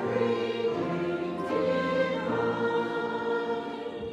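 Small mixed church choir singing in parts with piano accompaniment, in held chords that change every second or so.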